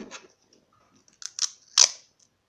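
Scissors cutting: two short, crunchy snips about half a second apart near the end, the second louder, after a brief rustle of handling.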